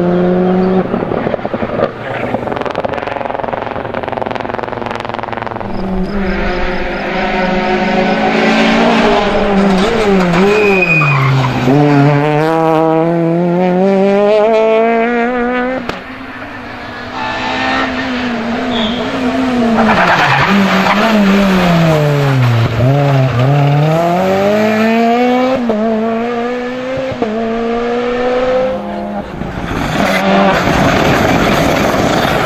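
Rally car engines at full stage pace, their pitch repeatedly dropping under braking and climbing again through the gears. A brief dip in loudness about halfway through, then a second car revving up and down.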